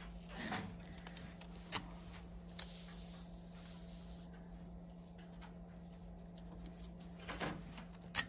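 Paper pattern pieces slid and handled on a paper-covered tabletop: faint rustles and a few light taps, with a brief sliding hiss a few seconds in, over a steady low hum.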